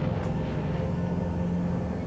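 A low, steady rumbling drone with a held low tone, the dark ambient bed of an animated soundtrack.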